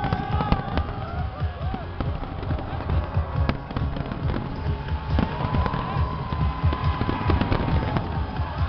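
Large fireworks display: a continuous barrage of booming shell bursts with sharp cracks and crackling, dense and without a break.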